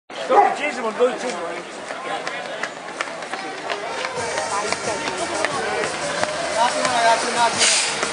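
Voices of spectators talking and calling along the street, with a louder call near the start.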